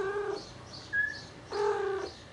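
A mother cat meowing twice, two short calls of even pitch about a second and a half apart, with a brief high chirp between them.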